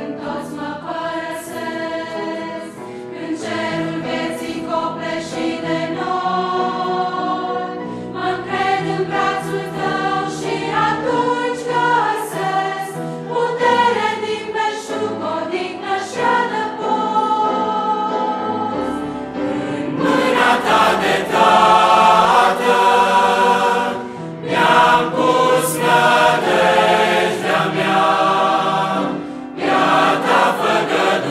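Large mixed choir of women's and men's voices singing a Romanian Christian hymn, swelling louder and fuller about two-thirds of the way through.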